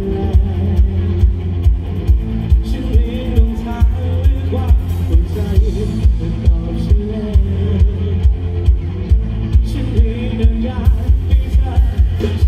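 Live rock band heard through the stage PA from the audience: a drum-kit beat at about two hits a second over heavy bass and electric guitars, with a voice singing in places.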